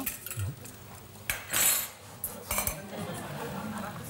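Cutlery clinking and scraping on plates as people eat, with one longer scrape about a second and a half in.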